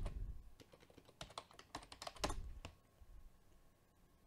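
Computer keyboard typing: a short run of quick keystrokes that stops about three seconds in.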